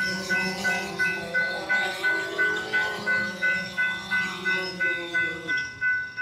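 Railroad crossing warning bell ringing steadily, about three strikes a second, over the hum of a DJI Phantom 4 quadcopter's propellers as it comes down to land. The propeller hum stops a little before the end, once the drone has touched down.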